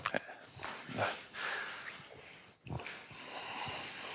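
Faint rustling and handling noise with a few soft knocks and indistinct murmurs, in a pause with no one speaking into the microphone.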